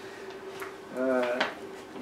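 Stemmed drinking glasses being handled and set down on a table, with a few light sharp clinks.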